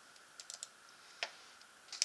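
Clicks at a computer as a photo file is opened: a few light taps about half a second in, then two sharper clicks, one just past a second and one near the end.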